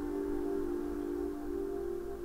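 Soft background film score: slow, sustained held notes with no beat, a few quieter higher notes shifting over them.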